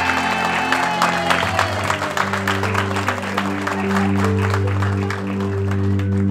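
Music playing with a crowd clapping steadily throughout, a big round of applause.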